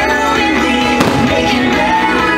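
Fireworks-show music with singing plays continuously, and one firework bang cracks out about a second in.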